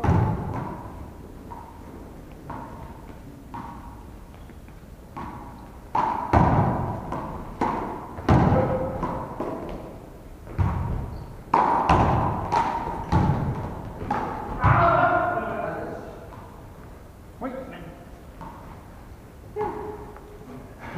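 A one-wall handball rally: sharp smacks of a hand striking the ball and the ball hitting the wall and floor, echoing in a large hall. One hit at the very start, then a quick run of about nine hits from about six to fifteen seconds in.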